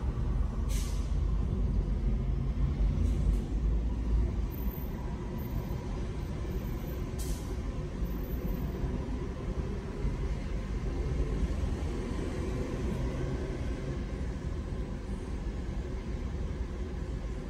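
Steady low traffic rumble at a stopped intersection, with a city transit bus turning across in front: its air brakes let out a sharp hiss about a second in, a fainter one a few seconds later and another about seven seconds in.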